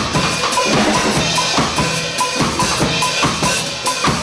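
Acoustic drum kit played live in a steady, even beat of bass drum, snare rimshots and cymbals, a demonstration of the original ska drum groove.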